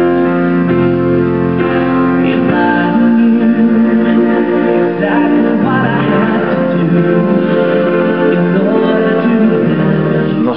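Boy-band pop ballad playing from a recording, with piano and sung vocals layered in big harmonies over held backing chords.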